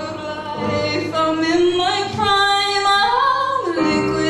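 A woman singing live over a Casio Privia digital piano, drawing out long, wavering held notes in the second half.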